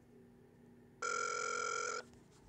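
A telephone ringing tone heard over a phone's speakerphone: a single buzzy ring of about a second, starting about a second in and cutting off sharply, one of a repeating series while the call goes unanswered.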